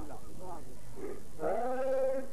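A man speaking, who about one and a half seconds in breaks into a long held chanted note that glides up at its start and carries on into singing.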